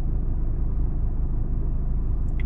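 Car engine idling, a steady low rumble heard inside the car's cabin.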